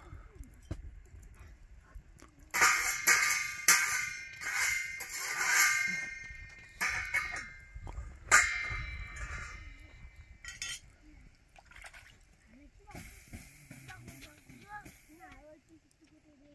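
Metal spatula striking and scraping a round iron griddle over a wood fire: a run of ringing metallic clanks, the loudest near the end of the run, followed by quieter scraping.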